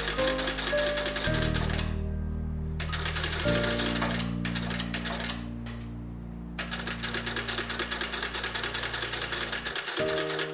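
Industrial sewing machine stitching leather, a rapid, even clicking of the needle and feed, stopping briefly twice as the work is repositioned.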